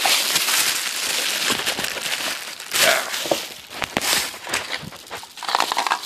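Thin plastic bag wrapping crinkling and rustling as it is handled around a spotting scope in its cardboard box, in irregular bursts with small clicks and knocks.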